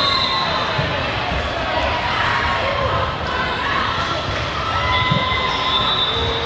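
A busy volleyball gym: many voices and shouts from players and spectators, with volleyballs being hit and bouncing on the court floor, all echoing in the large hall.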